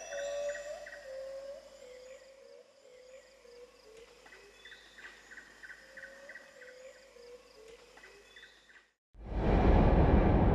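Faint outdoor ambience with short bird calls repeating. About nine seconds in, a loud rushing, rumbling whoosh sound effect starts.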